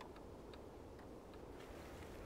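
Near silence with a few faint, scattered ticks.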